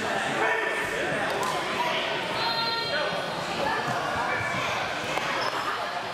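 Indistinct talking of several people in a large, echoing gymnasium, with a few light thumps.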